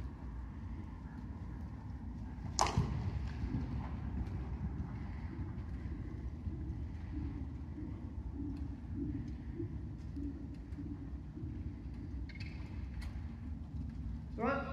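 Steady low rumble of microphone handling noise while a horse moves about a sand arena, with one sharp swish about two and a half seconds in.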